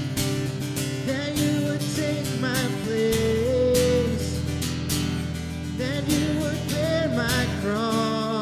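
Live worship song: a man singing at the microphone while strumming guitar, with the band playing along.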